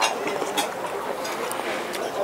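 A spoonful of French onion soup sipped from a spoon, with a few light clicks, over steady dining-room chatter.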